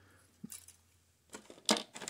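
A few faint clicks and light rattles of a hard plastic model-kit parts tree being handled, the loudest near the end.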